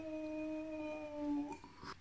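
A man's voice holding one long, steady 'oooh' note that stops about one and a half seconds in.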